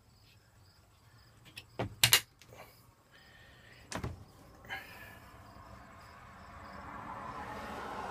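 A few sharp knocks and clicks, the loudest about two seconds in, from doors and fittings being handled inside the small trailer. From about five seconds in, a faint hiss slowly builds.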